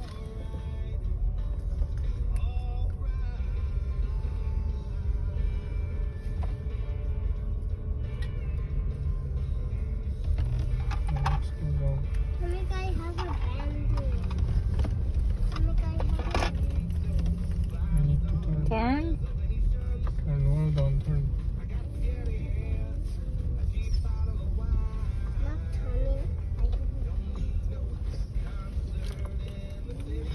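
Steady low rumble inside a car cabin, with a small child's babbling and squeals and music playing underneath.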